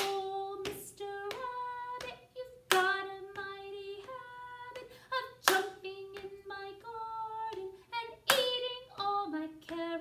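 A woman singing a simple children's song unaccompanied, clapping once at the start of each phrase on the strong beat: four sharp claps about three seconds apart.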